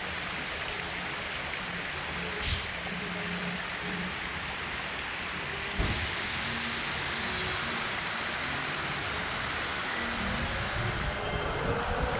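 Steady splashing of fountain jets spraying into a shallow pool, with a sharp click about two and a half seconds in and a thump about six seconds in. A low rumble builds near the end.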